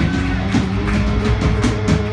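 Live rock band playing an instrumental passage: electric guitars and bass guitar with drums, the drums striking in a steady beat.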